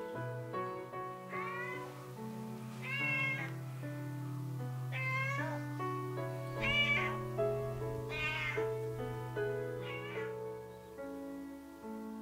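A domestic cat meowing six times, a call every second and a half or so, over background piano music.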